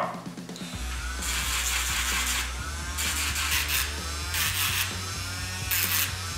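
Dremel Stylo rotary tool's sanding drum grinding a small piece of Baltic amber, in four separate gritty bursts as the amber is pressed to the drum and drawn away. Background music with a steady low bass runs under it.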